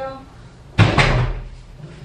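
A door shutting: a sudden loud thud just under a second in, with a second knock right after it, dying away quickly.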